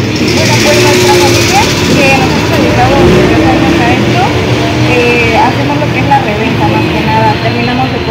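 Street ambience: a motor vehicle engine running steadily under a background of indistinct voices.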